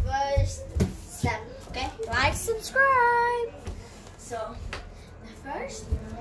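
Girls' voices chattering, with a short held sung note about three seconds in, and a couple of soft thumps of bare feet landing on the floor in the first second or so.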